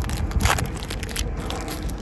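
Foil wrapper of a trading-card pack torn open and crinkled by hand, loudest about half a second in.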